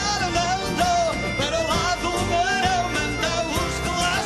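Live band of acoustic guitars, bass and percussion playing the final bars of a Portuguese folk-pop song, with a male voice singing a wavering melody over it.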